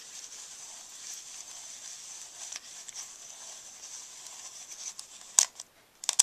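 Film being hand-cranked back into its canister with the rewind knob of a Chinon 35mm camera: a faint, steady scratchy sound with small ticks, then a sharp click near the end followed by a few smaller clicks.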